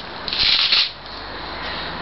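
A brief rustling, rubbing noise about half a second long, followed by a fainter steady hiss.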